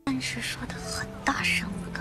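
Soft background music from the drama's soundtrack, with a quiet, breathy voice speaking briefly about halfway through.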